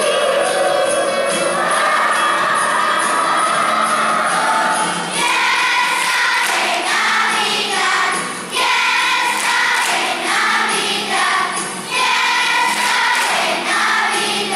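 Children's choir singing a Christmas song with musical accompaniment and a steady light beat; from about five seconds in, the singing breaks into short, choppy phrases.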